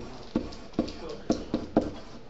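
Stylus knocking and tapping on a tablet computer's screen while handwriting, an irregular run of sharp taps about every quarter to half second.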